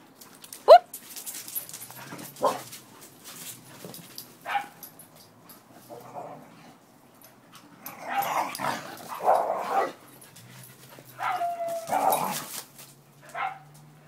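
A dog yipping and whining in short calls, opening with a sharp rising yelp about a second in, which is the loudest sound. A denser run of barking-like calls follows around the middle, and a longer held whine comes near the end.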